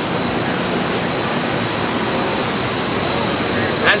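Steady roar of industrial wood-finishing machinery running, with a few faint, steady high-pitched whines over it.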